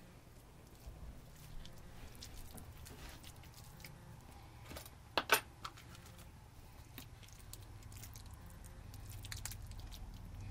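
Faint wet squishing and scattered light taps of hands rubbing minced garlic over a raw prime rib roast in a stainless steel pan. There is a sharp click about five seconds in, over a low steady hum.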